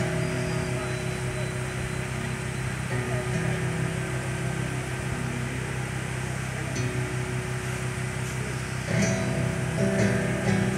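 Acoustic guitar with single notes left ringing over a steady low hum, then strummed chords start about nine seconds in.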